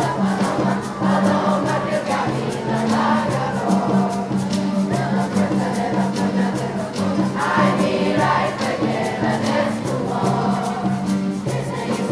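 Seventh-grade choir singing together, with acoustic guitar and hand percussion keeping a steady beat.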